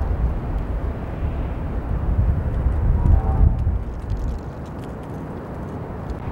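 Wind buffeting the microphone: an uneven low rumble that eases about four seconds in.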